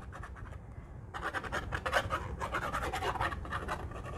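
Fine-tip glue bottle's nozzle scratching over the back of a paper die cut as a line of glue is run on. It is faint at first, then a quick run of dry scratches begins about a second in.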